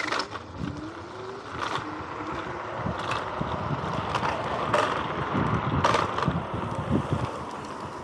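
Vsett 10+ electric scooter rolling over rough, cracked concrete: steady tyre and road noise with wind on the microphone, and sharp knocks and rattles from the scooter as it hits cracks and bumps, several of them spread through the ride. A short rising whine about half a second in as the hub motors pull.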